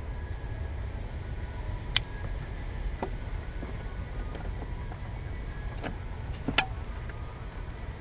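Sharp plastic clicks and taps as a wiring harness connector and car door trim pieces are handled, a few seconds apart and loudest about six and a half seconds in, over a steady low rumble.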